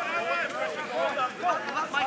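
Background chatter: several voices talking and calling out at a distance from the microphone, overlapping, with no single close voice.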